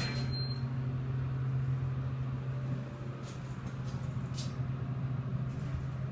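Elevator car in motion, giving a steady low hum. A brief high beep sounds right at the start, and a few faint clicks come in the second half.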